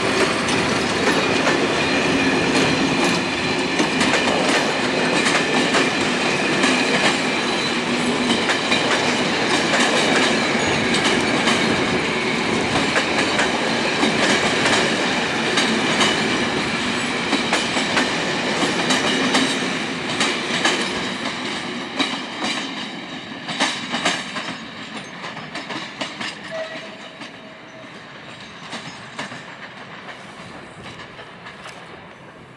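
Skoda-built BDZ class 45 electric locomotive and its passenger coaches rolling past close by, wheels clicking over the rail joints. The sound stays loud for about twenty seconds, then fades as the train moves away.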